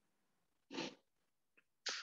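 A man's quiet breathing between sentences: one short breath about a second in and another near the end, just before he speaks again.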